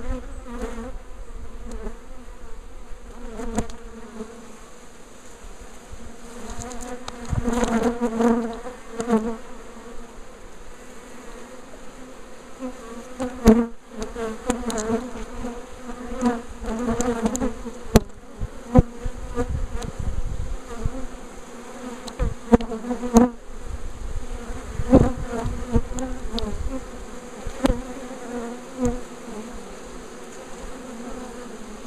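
A swarm of honeybees buzzing around an open hive, a steady hum with individual bees passing close by, their pitch wavering as they fly past. A few sharp clicks sound now and then.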